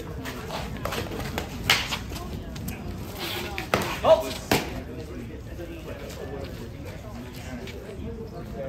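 Sharp knocks of fighting sticks striking during a sparring exchange: one hit about two seconds in, then a quick cluster of three around four seconds in, over background voices.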